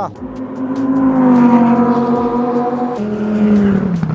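Lamborghini Huracán Spyder's V10 engine running at a steady pitch as the car drives along the track, the note sagging slowly, stepping down about three seconds in and falling further near the end.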